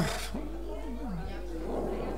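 Faint, indistinct voices of people in the room murmuring during a pause in the amplified speech, over a steady low hum.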